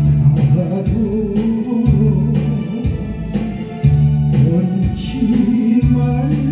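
A man singing into a handheld microphone over a recorded backing track, with a bass line that moves about once a second and plucked guitar.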